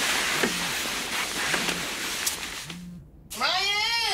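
A steady rush of running water with a soft low pulse about once a second. The water stops shortly before the end, and a pitched, wavering, voice-like sound starts.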